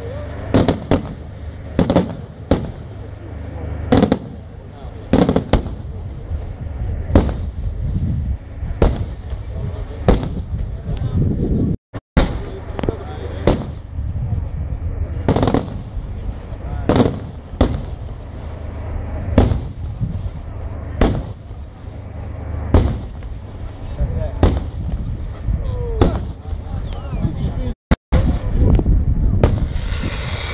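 Aerial firework shells (Italian competition bombe da tiro) bursting overhead in a rapid, irregular series of loud bangs, about one a second.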